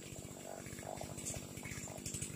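A small engine running steadily and faintly at idle, with a rapid, even pulse.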